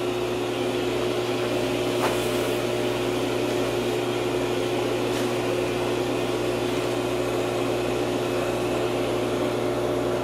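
CoolSculpting machine running with a steady hum and whir, with a faint click about two seconds in and another about five seconds in.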